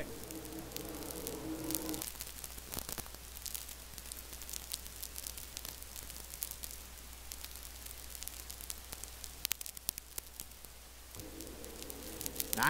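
Faint steady hiss and electrical hum with scattered crackles from an open announcer's microphone line; a faint steady tone sits under it briefly at the start and again near the end.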